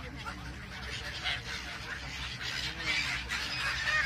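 A flock of brown-headed gulls calling, many short harsh cries overlapping one another over a steady background hubbub.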